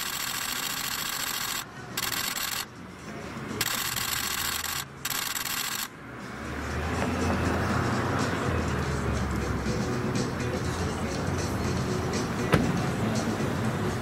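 Steady street hiss that drops out briefly a few times, then from about six seconds in the low steady hum of an SUV's engine idling at the curb. A single sharp knock near the end, typical of a car door shutting.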